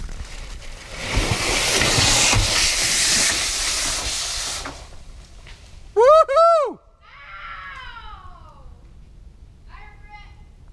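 A rushing scrape of a body sliding down a corrugated metal sheet slide, lasting about four seconds. About six seconds in, a voice gives two loud rising-and-falling whoops, followed by fainter calls that fall in pitch.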